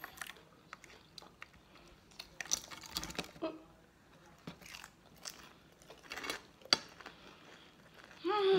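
Close mouth sounds of chewing and crunching fried food, with scattered small crunches and clicks. A single sharp click a little before the end is the loudest sound.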